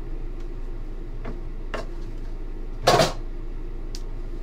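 Trading cards being handled on a table: a few soft clicks and one louder scrape or tap of the card stack about three seconds in, over a steady low hum.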